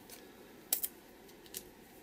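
Fingers handling a small roll of washi tape: a few faint, sharp ticks, two close together under a second in and one more past the middle.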